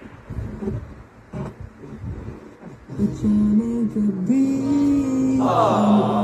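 Toshiba RT-S77 boombox's FM radio being tuned: faint, broken scraps of sound for about three seconds, then a station comes in and music with singing plays through the speakers, much louder.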